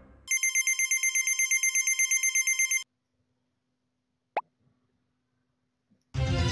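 Telephone-ring sound effect: a fast trilling ring of about nine pulses a second, lasting about two and a half seconds and cutting off abruptly. A single short blip sounds about four seconds in.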